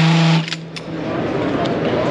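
Cordless drill driving a composite screw through a stand-up deck-screw driving attachment: the motor runs at a low, steady pitch under load and stops about half a second in. Busy exhibition-hall murmur follows.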